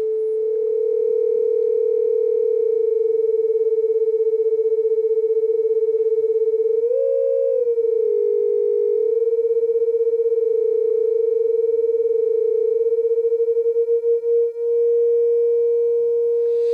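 The two oscillators of a Frap Tools BRENSO analog complex oscillator sound the same sustained note together, beating against each other while one is tuned by hand to unison. The pitch lifts briefly about halfway through and dips below. Then the beating slows and the two lock into a single steady tone near the end.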